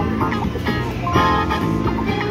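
Quick Hit Platinum slot machine playing its free-games bonus music, a run of short pitched notes, as a free spin plays.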